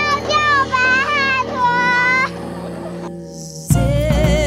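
High children's voices calling out in long, drawn-out calls over low steady music, fading after about two seconds; near the end, louder recorded music cuts in suddenly.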